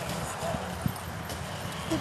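A horse's hoofbeats on arena dirt as it gallops around a barrel in a barrel-racing pattern, with one sharper knock a little before halfway through.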